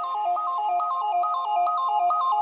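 Electronic background music: a quick, repeating run of clear synth notes stepping up and down.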